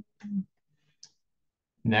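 A man's voice giving a short murmur, then a single faint click about a second in, before he starts speaking again.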